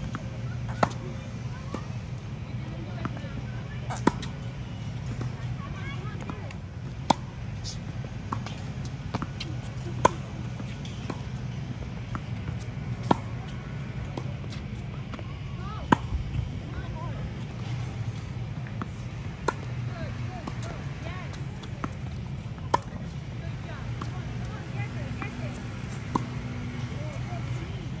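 Tennis rally: sharp pocks of a tennis ball struck by racket strings, the loudest about every three seconds with fainter hits and bounces between, over a steady low hum.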